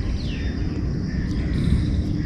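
Outdoor background: a steady low rumble, with a faint falling bird chirp just after the start.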